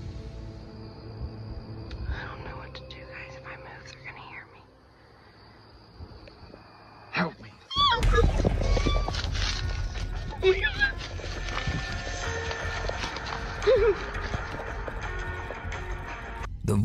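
Tense background music, quiet for the first half. About halfway in, the sound jumps in loudness as a man's voice shouts "Help me!", and dense, noisy sound and music carry on to the end.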